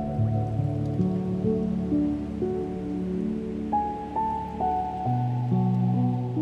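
Slow, gentle solo piano: single melody notes stepping up and down over held low chords, with a new low chord about five seconds in. A faint steady wash of water sound lies beneath.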